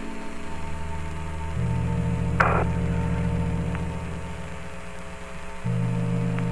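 Apollo 15 radio channel static: steady hiss and hum, with one short burst of crackle about two and a half seconds in. Low sustained music tones lie underneath and shift pitch twice.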